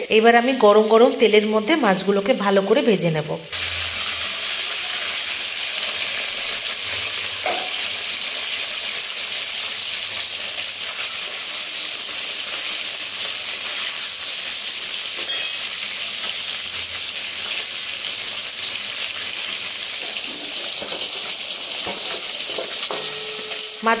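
Katla fish steaks shallow-frying in hot oil in a kadai: a steady, even sizzle that carries on without a break once the talking stops, about three seconds in.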